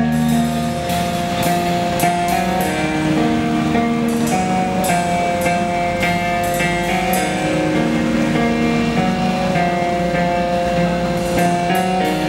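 Live rock band playing an instrumental passage on electric guitars and a drum kit: long held guitar notes that change about once a second, over drum and cymbal hits.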